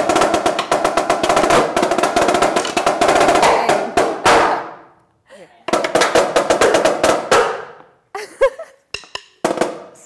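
A marching snare drum struck rapidly with sticks in a dense, roll-like run for about four and a half seconds that rings off. After a short pause comes a second fast burst of about two seconds, then a few scattered hits near the end.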